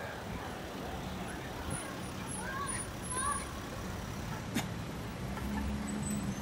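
Street traffic at an intersection: cars idling and pulling through, a steady low rumble. A single sharp click comes about four and a half seconds in.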